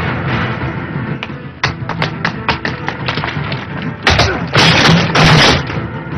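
Film background music running under fight sound effects: a string of short, sharp hits in the second and third seconds, then several loud crashing impacts about four to five and a half seconds in.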